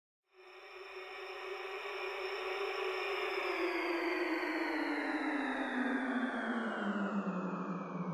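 A long, slowly falling whoosh sound effect: a hissing rush with a humming tone inside it, both sliding steadily down in pitch. It fades in just after the start and builds in loudness.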